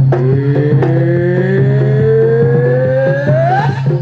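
Kendang drums of the pencak silat accompaniment keep up their repeating pattern. Over them a long pitched tone glides steadily upward for about three and a half seconds and breaks off near the end.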